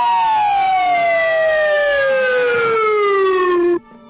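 A man's long scream whose pitch slides steadily down over nearly four seconds, then breaks off abruptly near the end.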